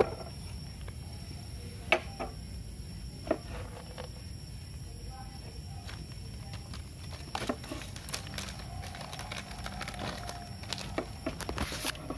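A few scattered sharp taps and clicks as a metal concealed hinge and a plywood cabinet door are handled, coming closer together in the second half, over a steady low hum.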